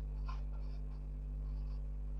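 Felt-tip marker writing on a whiteboard: a run of faint, short, squeaky strokes as a word is written, over a steady low hum.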